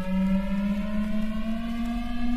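Experimental electronic music: a single held tone, rich in overtones, slowly gliding upward in pitch like a slow siren.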